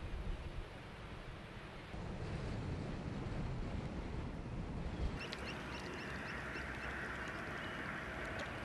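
A mixed flock of shorebirds and gulls calling on the mudflat over a low rumble. About five seconds in, the calling becomes louder and denser, a mass of short high calls as the flock takes flight.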